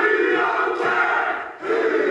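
A group of men chanting a haka in unison: a long held shout from many voices that breaks off briefly about one and a half seconds in, then starts again.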